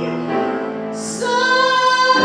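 A woman singing with piano accompaniment: held notes with vibrato, a brief sibilant 's' about a second in, then a new long note.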